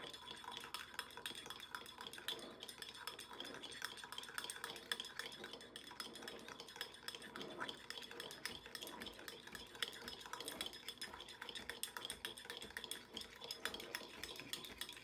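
A stained-clay spoon stirring cocoa powder into hot water in a narrow ceramic mug, with a steady run of light clinks and scrapes against the mug wall as the powder is mixed in.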